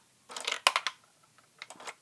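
Plastic Lego parts of a gumball machine's lever mechanism clicking and rattling as the pushed lever releases a gumball, which drops down the chute. A quick cluster of sharp clicks comes about half a second in, with a few faint ticks near the end.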